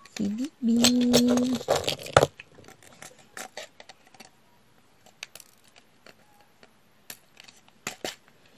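Small, sharp clicks at irregular intervals from a diamond-painting drill pen picking up resin drills and pressing them onto the canvas.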